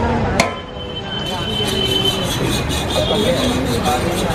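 Busy dosa-stall ambience: a sharp knock about half a second in, then quick, repeated clinks and scrapes of a metal spatula on the flat dosa griddles, over crowd chatter.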